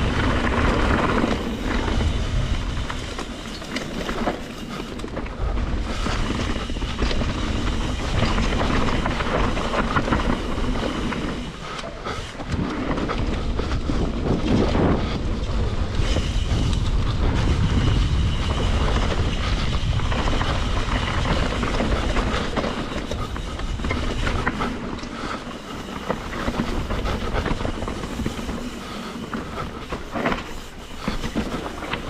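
Mountain bike descending a rough dirt and gravel trail at speed: continuous tyre noise over loose stones and dirt, the bike rattling over the bumps, and wind rumbling on the microphone.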